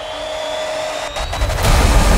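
Trailer sound design: a swelling whoosh with a thin rising high tone, a few sharp clicks just after a second in, then a sudden loud, deep boom hit about one and a half seconds in.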